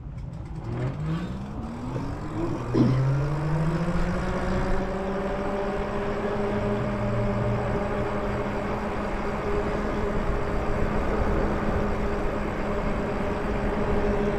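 Electric bike motor whining as the rider pulls away: the whine climbs in pitch for the first few seconds as the bike speeds up, then holds steady at cruising speed over road and wind noise.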